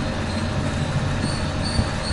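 Steady background hiss with a low hum underneath, level and unchanging, with no distinct clicks or knocks.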